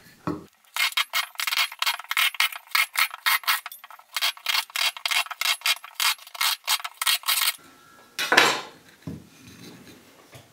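Small fine-toothed hand saw cutting shallow notches into a wooden stick, in quick, even back-and-forth strokes, about three or four a second, with a short break near the middle. The sawing stops near the end, followed by one louder scrape and some lighter handling of the wood.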